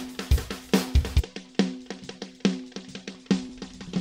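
A drum-kit loop played through the u-he Satin tape-emulation plug-in in tape-delay mode on a flanging delay preset. It gives regular hits, about two to three a second, each trailed by a ringing pitched tone from the delay repeats. The deep kick-drum thumps drop out about a second in.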